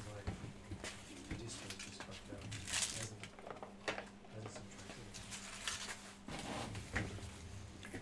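Quiet room tone with a steady low hum and scattered faint knocks and rustles of movement.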